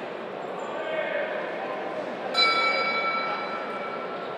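Boxing ring bell struck once about two and a half seconds in, its clear tone ringing on and slowly fading: the signal to start the round. Under it is a steady murmur of crowd voices.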